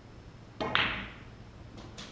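A snooker cue tip strikes the cue ball about half a second in, followed at once by the louder sharp click of the cue ball hitting an object ball, which rings briefly. A fainter knock of a ball comes near the end.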